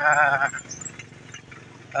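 A man's drawn-out hesitation sound, a long 'uhh', for about half a second, then a pause with only faint background noise.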